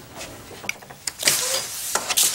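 A door being opened: a rushing, sliding swish that starts about a second in.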